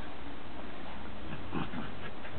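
A dog makes a brief vocal sound about one and a half seconds in, over a steady background hiss.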